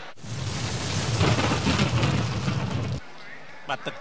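A loud rumbling burst of noise lasting about three seconds, which cuts off suddenly.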